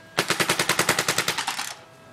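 Planet Eclipse Etek 3 electronic paintball marker firing a rapid burst of about a dozen shots a second, lasting about a second and a half and cutting off shortly before the end.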